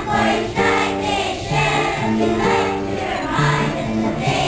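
Children's choir singing in unison, holding notes that change pitch every half second or so.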